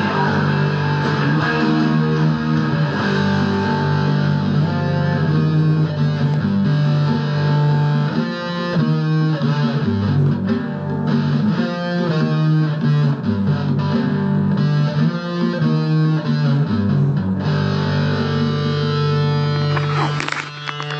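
Stratocaster-style electric guitar playing the song's lead riffs, a run of changing single notes over a steady low note.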